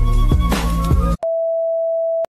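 Music with a steady beat cuts off about a second in and is replaced by a single steady electronic beep, a TV test-pattern tone.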